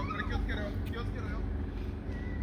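Voices of children and adults talking and playing at a distance, none of it clear, over a steady low hum.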